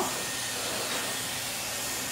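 Dyson hair dryer running steadily, blast-drying wet hair: an even rush of air.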